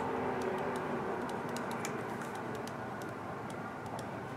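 Pen writing on notebook paper: faint scratches and small ticks from the strokes, over a steady background hiss and hum.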